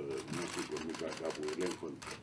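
Camera shutters clicking rapidly, many clicks a second, over a man speaking.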